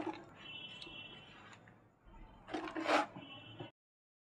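Moist garden soil being scooped by hand and dropped into a plastic pot: soft crumbly rustling, with a louder rustle about two and a half seconds in. The sound cuts off abruptly shortly before the end.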